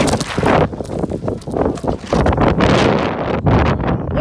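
Loud, irregular rubbing and knocking on the camera microphone as it is handled and brushed against fabric and a hand, mixed with wind buffeting.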